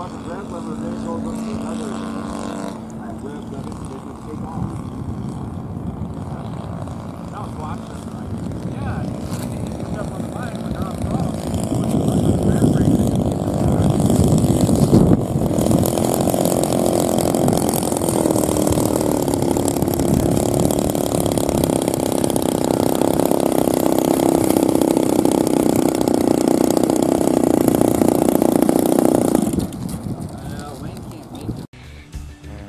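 Radio-control model airplane's engine running: a steady drone while the plane is airborne, growing much louder as it comes down and rolls along the runway, then running steadily close by as it taxis.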